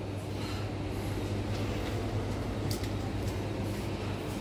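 Wire shopping cart rolling over a tiled supermarket floor, a steady rumble, over the low, even hum of the store's drinks coolers.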